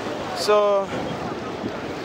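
Ocean surf washing onto the beach, a steady rushing noise, with wind on the microphone.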